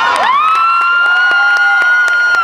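Audience cheering. One long, high-pitched cry from the crowd rises, holds steady and begins to trail off downward near the end.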